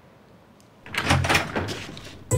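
A door being opened about a second in: a sudden thud and clatter that fades over the next second.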